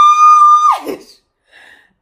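A woman's voice squealing a loud, high note in excitement. It swoops up, holds steady for under a second, then slides down.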